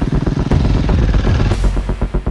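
Electronic background music with a steady, throbbing beat; a hissing swell fills the music and cuts off about a second and a half in.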